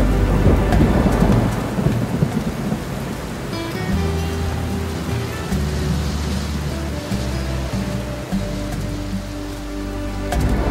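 Heavy rain falling with thunder rumbling, over soft background music.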